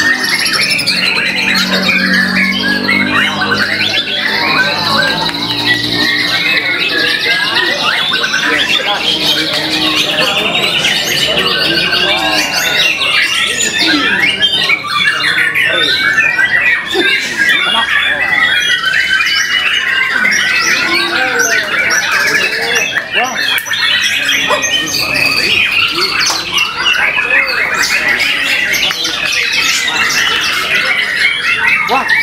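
White-rumped shama singing continuously: a long, varied song of rapid whistles, trills and harsher notes with no real pause.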